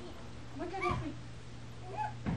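A single short high-pitched call, rising then falling in pitch, about half a second long, a little before the middle, over a steady low hum.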